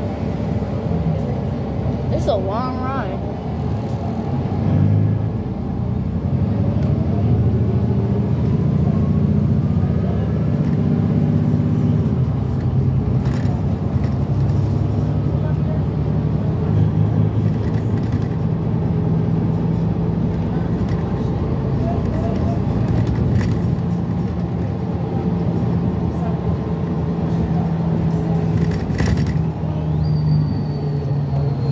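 Inside a New Flyer XD40 diesel transit bus under way: steady drone of the diesel engine and drivetrain with road noise. A whine rises in pitch between about six and eleven seconds in as the bus gathers speed.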